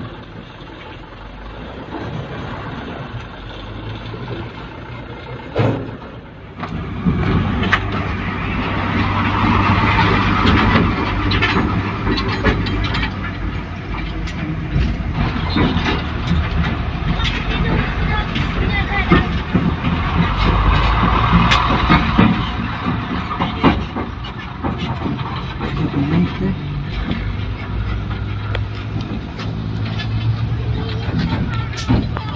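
Heavy garbage truck engine running, growing much louder about seven seconds in and then holding a steady low hum, with people's voices and occasional knocks over it.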